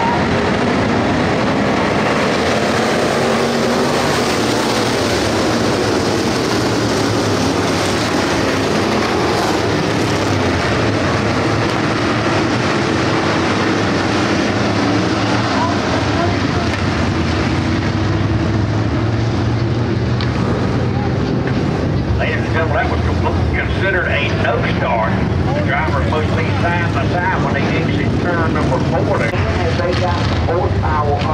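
A field of dirt-track stock cars running together at pace speed before the start, making a loud, steady, many-engine drone. From about two-thirds of the way in, a voice is heard over it.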